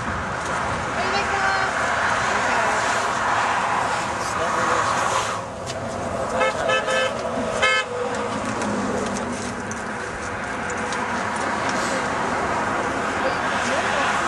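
Road traffic passing, with vehicle horns honking, amid people's voices.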